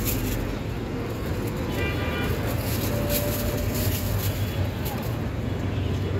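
Steady rumble of street traffic, with a short horn-like tone about three seconds in.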